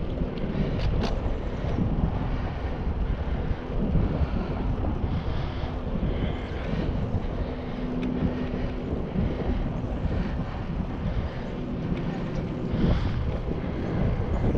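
Wind buffeting the microphone of a camera riding on a moving bicycle: a steady low rumble mixed with tyre noise on asphalt, with a couple of brief louder gusts, one about a second in and one near the end.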